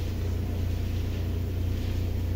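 Steady low mechanical hum, like a motor running, with faint rustling of hands working plastic dashboard trim clips.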